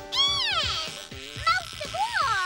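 A cartoon character's high vocal cry sliding steeply down in pitch over about a second, then a second shorter cry rising and falling near the end, over a held music chord.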